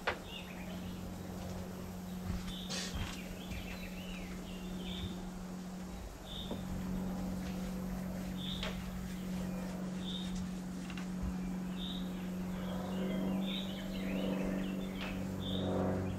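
Small birds chirping, short high chirps every second or so, over a steady low hum.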